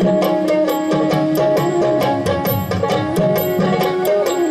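Instrumental passage of a Bhawaiya folk song: a plucked string instrument plays an ornamented melody over a quick, steady drum beat.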